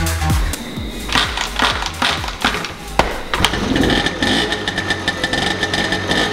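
Electronic dance music with a beat, giving way about halfway through to the small two-stroke engine of a 1978 Honda Express moped running at idle, newly able to idle after its carburettor jets were cleaned.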